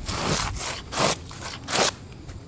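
Scuffing footsteps of worn, torn-up Reebok ZigTech running shoes dragging on rough asphalt: three rasping scrapes about half a second apart.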